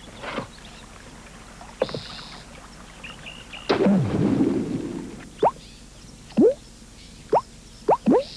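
Short sound effects on a TV commercial soundtrack: a few small clicks and a brief hiss, then a deeper swoop falling in pitch with a rumble under it about four seconds in, followed by three quick downward pitch drops about a second apart.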